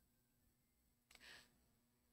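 Near silence: a pause in a speech at a microphone, with one faint short breath a little over a second in.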